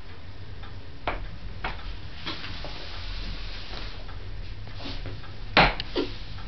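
A few scattered light knocks at irregular intervals over a low steady hum, the loudest knock near the end.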